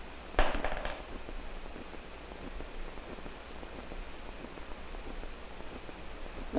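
A marble dropped into a hollow perforated plastic ball, clattering and rattling inside it briefly about half a second in. After that only a steady hiss.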